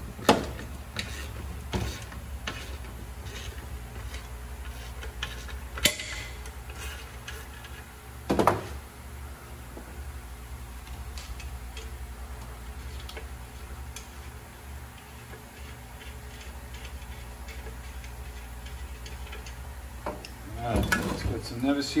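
Scattered metallic clicks and clinks of a wrench working on a steel catalytic converter as its dummy oxygen-sensor plugs are unscrewed, with one louder knock about eight seconds in. A steady low hum runs underneath.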